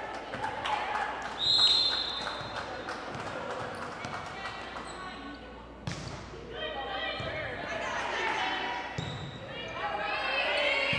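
Referee's whistle, one short blast about a second and a half in, signalling the serve. About six seconds in comes a single sharp smack of a hand serving the volleyball, followed by players' and spectators' voices.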